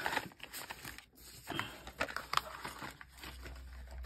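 Acrylic nail brushes and their cardboard box being handled, with scattered light clicks and soft rustling.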